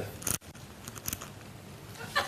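Quiet hall room tone with a few short faint clicks, and a brief noisy burst right at the start that cuts off abruptly.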